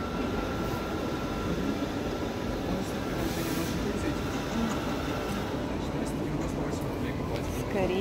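Busy indoor shopping-centre ambience: a steady rumbling hum with indistinct voices of other people in the background. A faint steady whine runs under it and fades out a little past halfway.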